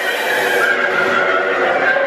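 Eerie sound effects from a haunted dark ride's audio track: a loud, long, wavering high-pitched wail over a dense background din.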